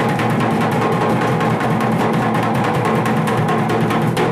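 Gajan folk dance music. Barrel drums slung from the shoulder are beaten with sticks in a fast, dense, roll-like rhythm over a harmonium holding steady notes.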